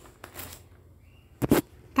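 A notebook's paper page being turned by hand: a soft rustle, then a short, sharp flap of paper about one and a half seconds in.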